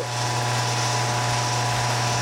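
Process machinery running with a steady low hum, a few steady mid-pitched tones and a constant hiss.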